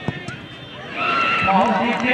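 A football kicked from the penalty spot: one sharp thud just after the start. About a second in, spectators burst into loud yells and shouting in reaction to the penalty.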